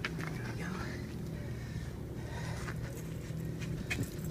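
A steady low hum, with faint rustling and a few light clicks.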